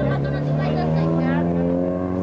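A motor vehicle engine running under load and accelerating, its pitch rising steadily over about a second and a half, amid street voices.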